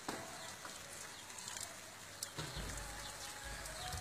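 Steady hiss of rain falling outdoors, with small birds chirping repeatedly and faint bleating from livestock. A low rumble comes in about halfway through.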